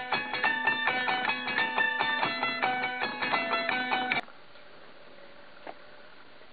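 A short melody of plucked, ringing notes played on a zither-like instrument that is fretted with a row of push-button keys. The melody stops abruptly about four seconds in, leaving faint room hiss.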